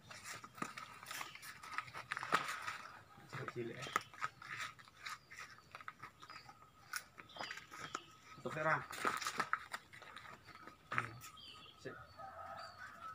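Faint voices in the background, with scattered clicks and rustles from potted grape trees in planter bags being handled on a truck bed.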